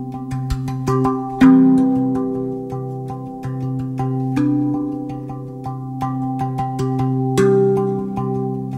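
RAV Vast 2 steel tongue drum tuned to the Golden Gate scale, played with the fingertips: a run of quick struck notes, each ringing on and overlapping the next, with heavier strikes about one and a half seconds in and near the end.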